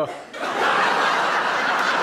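Audience laughing, swelling up about half a second in and holding steady, in reaction to a punchline.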